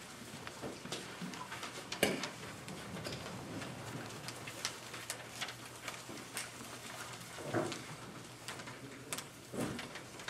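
Hushed meeting-room ambience with scattered small clicks and shuffling as people move about, a sharper click about two seconds in, and two brief soft murmurs later on.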